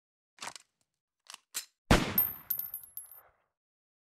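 Intro logo sound effect: three short clicks, then a loud bang about two seconds in with a reverberant tail, followed by a second of high metallic pinging and ticking.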